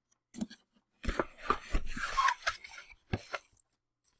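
Cardboard box and its packing foam being opened and handled: a couple of light taps, then about two seconds of dense rustling and scraping that thins out into a few clicks.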